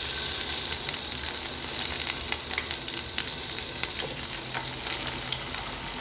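Snakehead fish steaks sizzling in hot cooking oil in a nonstick frying pan, a steady crackle with many small pops.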